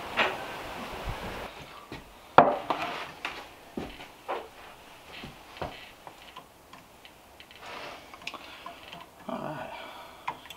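A wooden spoon stirring thick eggnog in an earthenware pitcher, giving irregular light knocks and clicks against the pot, the loudest about two and a half seconds in. A light outdoor hiss comes before it for the first second and a half.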